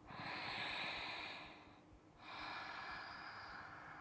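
A woman's slow, audible yoga breaths: two long, soft breaths of about a second and a half each, with a short pause between, paced with the movement of opening and rounding the spine.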